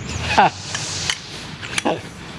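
A few sharp clicks and knocks as sections of a tent pole are fitted together, with brief voice sounds in between.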